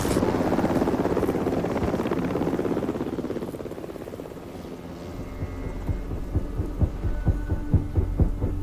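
Bell UH-1 Huey helicopter approaching low, its main rotor beating at a steady rhythm of several pulses a second over a low engine hum, growing louder from about five seconds in. Before it, a rushing noise fades away over the first few seconds.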